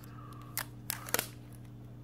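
A few short, sharp crinkles and clicks as a protective plastic sticker is peeled off a headphone earcup, over a steady low hum.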